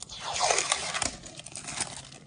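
Fingertips rubbing and sliding over the PVC glazing bead and sash profile of a Rehau window: a scratchy, crackly rubbing with small clicks. It opens with a sharp click and swells and fades over about two seconds, as the fitter feels that the new bead sits flush.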